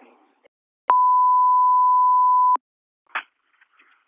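A single steady beep tone on a police radio channel, lasting under two seconds, starting and stopping with a click, about a second in. It is an alert tone ahead of a dispatch. A short clipped radio burst follows about three seconds in.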